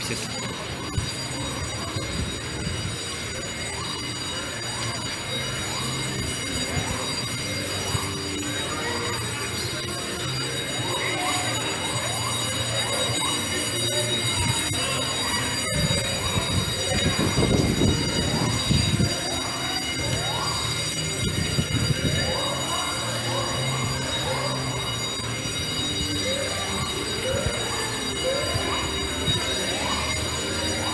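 Alarms sounding across the street in short rising whoops, one after another, over steady high tones, with a louder low rumble a little past halfway.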